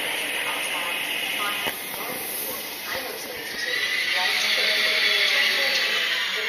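Thalys high-speed train rolling slowly along a station platform, with a high steady squeal from its running gear that grows louder about halfway through.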